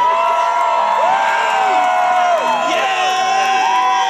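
Concert crowd cheering and whooping: many long 'woo' calls overlapping, each held and then falling away in pitch.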